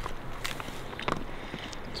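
Faint snacking sounds: a few scattered light clicks and rustles from a plastic bag of teriyaki beef sticks being handled and a stick being chewed.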